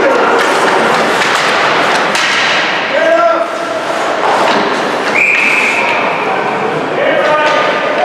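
Ice hockey game in an indoor rink: shouting voices over a steady din, with scattered thuds and knocks of sticks and puck against the ice and boards, and one long held call about five seconds in.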